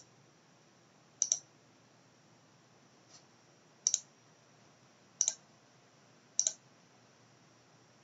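Computer mouse button clicking four times, a second or more apart, each click a sharp double tick of press and release, with a fainter single tick between the first two.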